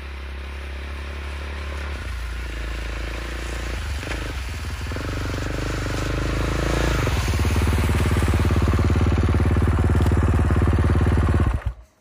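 Honda dirt-bike snow bike (ski-and-track conversion) engine riding up, growing louder as it comes closer. Its pitch drops and climbs again a few times, then the sound stops abruptly near the end.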